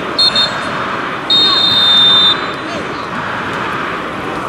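Referee's pea whistle: two quick short blasts, then one long blast of about a second, over the voices of players and onlookers. Blown at the very end of the first-half recording, the pattern fits the half-time whistle.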